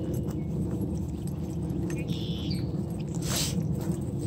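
Walking through a grassy field with a handheld phone: a steady low rustle of footsteps and handling noise, with a faint brief high tone about two seconds in and a short sharp swish about three and a half seconds in.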